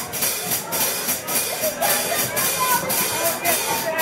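Drum-kit cymbal ticking in an even beat, with a few faint electric guitar notes and room chatter underneath; laughter breaks in near the end.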